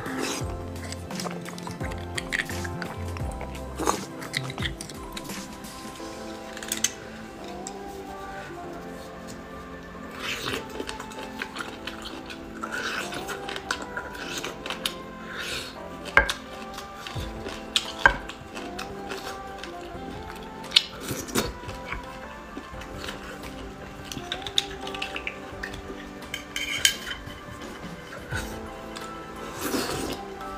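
Background music runs throughout, with scattered sharp clinks and scrapes of a metal spoon against the marrow bones and the dish as marrow is scooped out.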